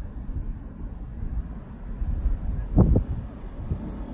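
Wind buffeting the microphone outdoors: an uneven low rumble throughout, with one brief, louder sound nearly three seconds in.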